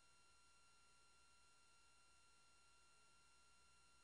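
Near silence: only a faint, steady electrical hum and hiss from the recording.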